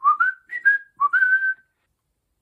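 A man whistling a short tune with his lips: about six quick notes, the last one held longest, stopping about a second and a half in.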